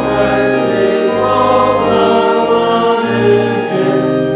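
Church organ playing a hymn in sustained chords that change every second or so, with voices singing along.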